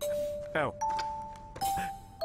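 Comic background score of single sustained bell-like notes, a new note struck about every 0.8 s at a changing pitch, under a man's short surprised 'Oh'.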